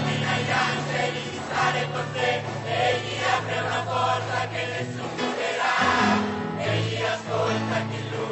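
A mixed youth choir singing a gospel song in Italian in full voice, over accompaniment with long held bass notes.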